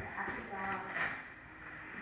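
A faint, brief voice-like sound about half a second in, over quiet room sound.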